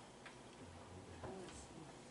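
Near silence: quiet room tone with a few faint, unevenly spaced clicks and a faint low murmur in the middle.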